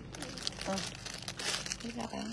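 Clear plastic bag crinkling and rustling as it is handled, in irregular bursts of rustle.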